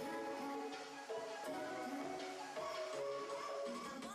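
Instrumental music: a melody of held notes stepping from one pitch to the next, at an even level.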